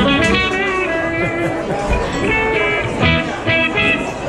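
Electric guitar played live through an amplifier, a short run of sustained notes changing pitch.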